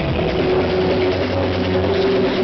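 Loud techno over a club sound system in a breakdown: the beat drops out at the start and low, sustained synth tones hold on.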